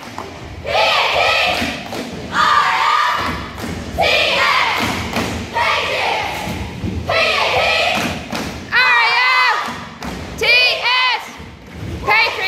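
A cheerleading squad shouting a chant in unison, in short loud phrases about a second apart, over thudding stomps and hits on the mat, echoing in a gym.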